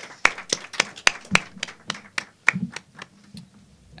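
Sparse hand clapping: separate claps at about three or four a second, thinning out and dying away about two and a half seconds in.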